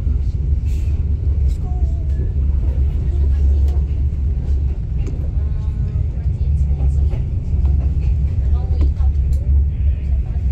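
Steady low rumble of a moving passenger train heard from inside the carriage, with faint voices here and there.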